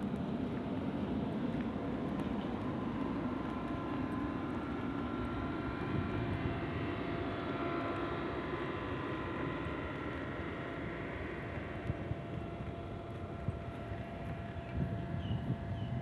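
Steady low rumble of distant engine noise with a faint, even whine that fades in the second half, and a few short chirps near the end.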